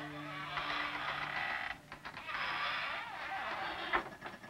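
A door creaking in two long, drawn-out creaks, with a sharp knock or thud at the very end. A low held music note fades out under the first creak.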